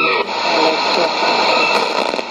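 Sony ICF-2001D shortwave receiver in AM, switched from 11640 kHz to 15550 kHz just after the start: the broadcast voice drops to a faint trace under a steady hiss of static.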